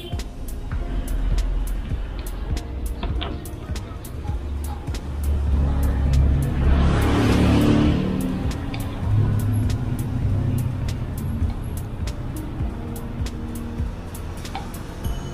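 Background music with a steady beat. About six seconds in, a rushing hiss swells and fades over roughly two seconds: liquid being poured into a container while washer fluid is mixed.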